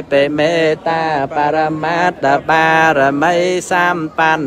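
A single voice singing a Buddhist chant in a slow, melodic style. The syllables are long and held, with brief breaks between phrases.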